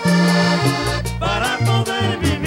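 Vallenato band playing an instrumental passage between sung verses. A Hohner button accordion carries the melody over sustained bass notes and a steady percussion beat.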